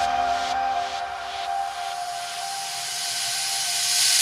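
Trance music breakdown: the bass and beat have dropped out, leaving a held synth tone under a white-noise sweep that rises in level over the last two seconds, building into the drop that comes just after.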